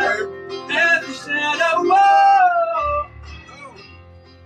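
Music with a man singing a melody. He holds one long note that slides down and ends about three seconds in, after which it goes much quieter.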